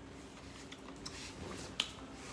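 A few faint small clicks, then one sharp click near the end, amid eating with metal chopsticks from a ceramic plate.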